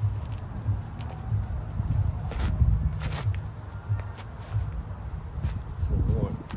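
A person stepping, shuffling and planting their feet on wood mulch, with a few short sharp scuffs, over a low uneven rumble.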